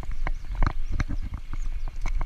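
Mountain bike rattling over a rough dirt trail: irregular sharp knocks and clicks from the bike, several a second, over a steady low rumble of wind and tyres on the microphone.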